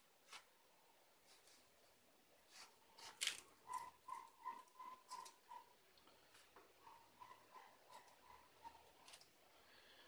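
Near silence: faint rustles and small taps of a cardboard strip being handled while glue is spread on it by finger, the clearest tap about three seconds in. A faint high note repeats two or three times a second in the background through the middle of the stretch.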